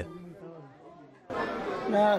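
Speech only: faint voices at first, then from about a second and a half in a man talking, with chatter behind him.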